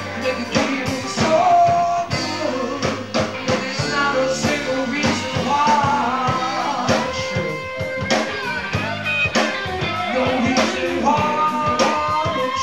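Live blues band playing, with electric guitar over a steady beat.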